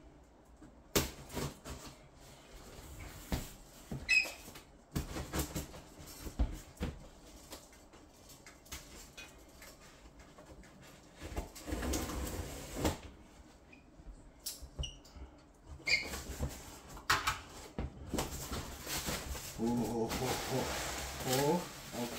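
A large cardboard guitar shipping box being opened by hand: scattered knocks and clicks of the flaps, with a longer stretch of cardboard and packing rustle about halfway through. A man's voice murmurs near the end.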